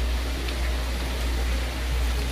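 Steady low hum under an even hiss of background noise, with no distinct event: room tone.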